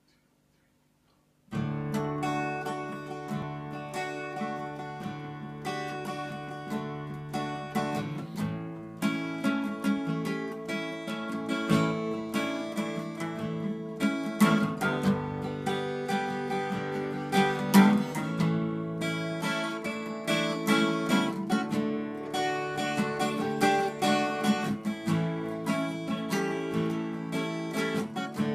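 Two acoustic guitars playing together, a song's instrumental introduction with no singing, starting about a second and a half in.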